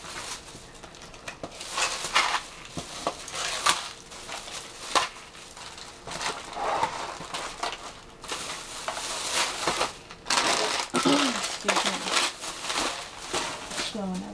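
Thin plastic shopping bag rustling and crinkling in irregular bursts as it is handled and rummaged through.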